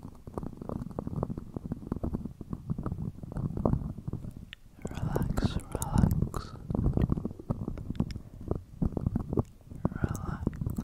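A dark plastic cap over a microphone's grille being rubbed, tapped and tilted by fingertips, giving a dense, muffled scratching and clicking close to the mic. About five seconds in, breathy mouth sounds join for around two seconds.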